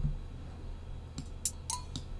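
A few short clicks from a computer keyboard and mouse, bunched together a little past the middle, as copied notes are pasted into place, over a low steady hum.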